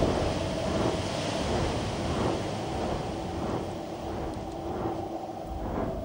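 Wind sound effect for a dragon's flight: a steady rushing noise that swells and eases slowly, with a faint steady hum underneath.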